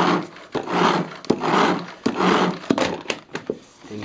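Autolizer 360° spinning mop's plastic spin mechanism being pumped by pushing down on the pole, spinning the dry mop head: about four whirring pulses roughly two-thirds of a second apart, then a few clicks near the end.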